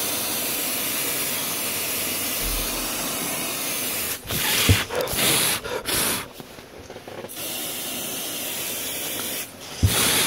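Aerosol spray can hissing in a long steady blast, then several short spurts, then another long blast and more short spurts near the end.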